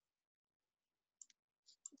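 Near silence, with a few faint, short clicks in the second half.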